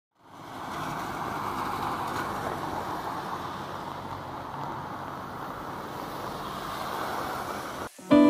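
Steady rushing outdoor ambience that fades in over the first second and cuts off abruptly just before the end.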